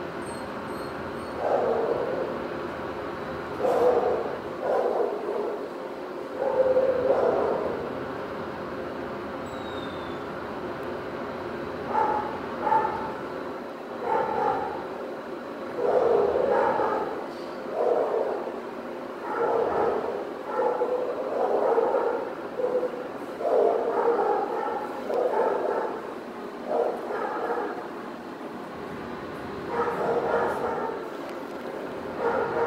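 A dog barking and yipping in repeated short bursts, with a quiet gap of a few seconds about a third of the way in, over a steady background noise.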